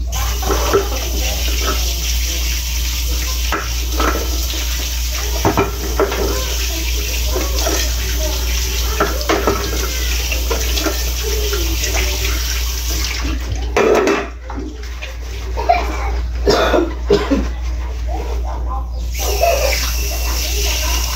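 Water running from a kitchen tap into a sink while dishes are washed by hand, splashing over a metal pot and other dishes, with scattered knocks of dishes against the sink. The running water thins out briefly a couple of times in the last third.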